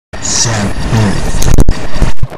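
Loud, harsh distorted noise of a video-intro logo sting, with a few short voice-like pitch glides in it. It cuts off abruptly about one and a half seconds in, and a brief burst follows near the end.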